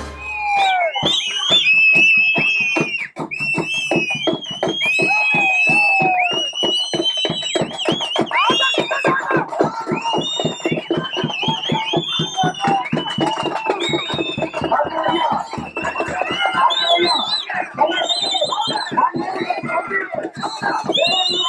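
Live percussion music: fast, even drumming at about five beats a second, with a shrill, wavering melody gliding above it and crowd voices mixed in.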